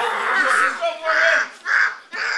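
Shouting voices in three short, loud bursts with no clear words.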